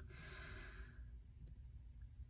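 A single soft breath close to a microphone, lasting about a second and fading out.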